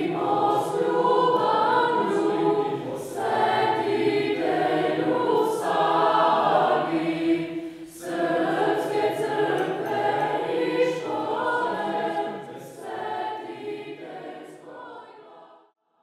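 Teenage school choir of girls and boys singing a cappella, in long phrases with brief breaks between them; the singing dies away near the end.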